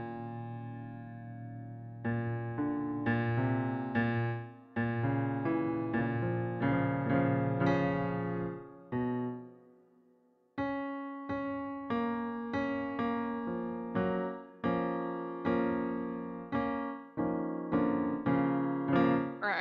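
Digital piano playing lush, jazzy chords being worked out by ear: held chords for about the first nine seconds, a brief pause, then a steady run of repeated struck chords, each decaying before the next.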